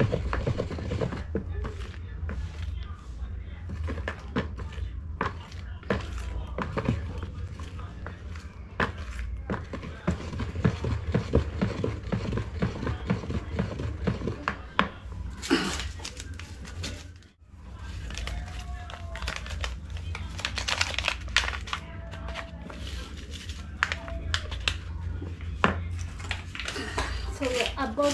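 Wooden stick stirring a thick liquid-detergent mixture in a plastic basin: a run of quick knocks and scrapes as the stick hits the sides, over a steady low hum.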